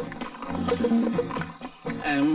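Film background music with a horse whinnying over it.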